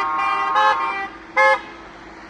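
Vehicle horns honking: a long blast of several horn tones sounding together that ends about a second in, then one short blast about one and a half seconds in.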